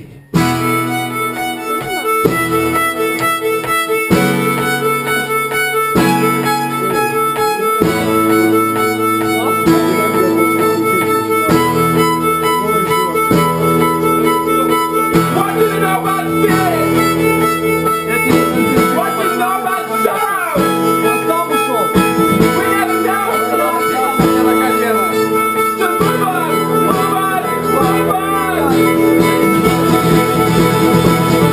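Live acoustic duo music: guitar and violin playing sustained chords that change about every two seconds, starting abruptly just after the beginning. From about halfway a wavering, sliding melody line is added over the chords.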